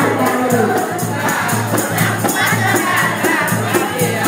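Group singing over hand percussion that keeps a steady beat, with a low steady drone underneath.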